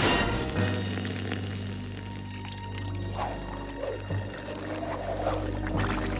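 Cartoon sound effect of liquid gurgling and pouring through a tube, over a steady low machine hum that starts about half a second in, with background music.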